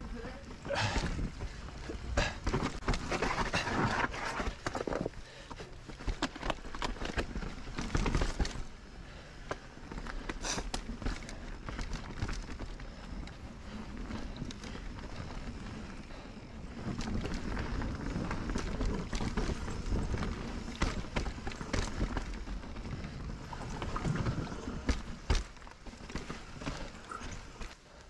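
Norco Sight full-suspension mountain bike riding down a rooty dirt and rock trail: tyres rolling and crunching over the ground, with frequent rattles and knocks from the bike over roots and rocks and a steady low rumble.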